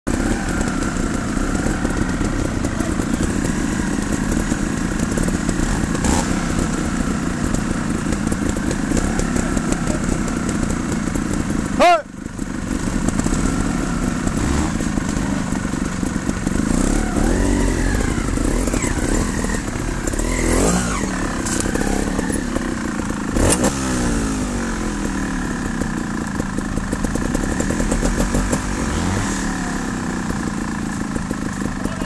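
Trials motorcycle engines running at idle throughout, with throttle blips that rise and fall in pitch, including a sharp rev about twelve seconds in.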